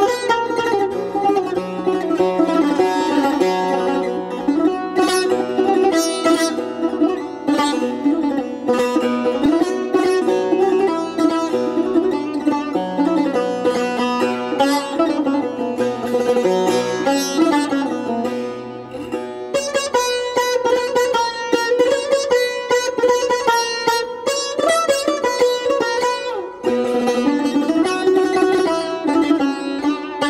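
Persian tar played solo: a melody of rapid plucked notes on its metal strings, with wavering, ornamented pitches and quick repeated strokes.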